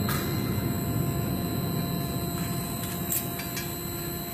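Factory machinery running: a steady mechanical hum and hiss with a few short clicks about three seconds in.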